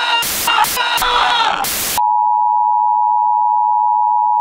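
Loud bursts of harsh television-style static, cutting on and off with warbling tones through them, for about two seconds. Then it switches suddenly to a single steady test tone, the kind played under broadcast colour bars.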